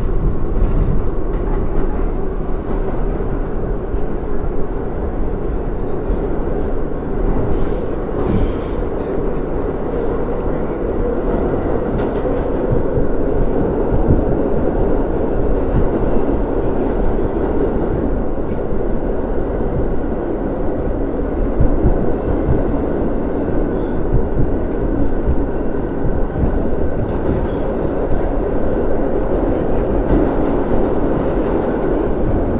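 Bombardier-built R62A subway car running noise heard from inside the car: a steady, loud rumble of the moving train as it runs from a station into the tunnel, with a few brief sharp clicks about eight to twelve seconds in.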